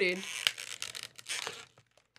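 Plastic packaging on a toy mystery box being torn open and crinkled: an irregular run of crackles and tearing that stops shortly before two seconds in.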